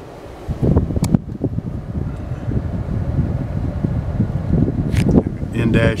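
Irregular low rumble of wind buffeting the camera microphone, starting about half a second in, with a sharp click about a second in and another near the end.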